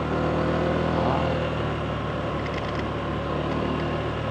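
Motorbike engine running steadily while riding along a road at low speed, a low even hum.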